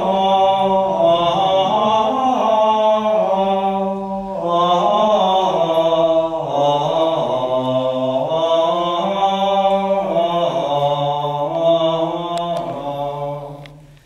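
Latin Gregorian plainchant sung in unison, the Gradual of the Mass: one melodic line of long held notes moving slowly up and down, with a short breath about four seconds in, fading out near the end.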